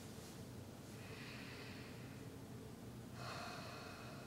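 A man's breathing, faint: two slow, audible breaths, one about a second in and a stronger one near the end, as he settles into meditation.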